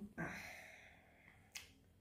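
Quiet room with a short fading breathy sound at the start, then a single sharp click about one and a half seconds in.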